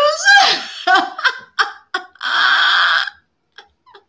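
A woman laughing: a drawn-out laugh at the start, then several short bursts of laughter and a long breathy exhale a little after two seconds in, dying away near the end.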